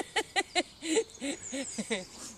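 A person laughing in a run of short, pitched 'ha' bursts, about five a second, loosening near the end.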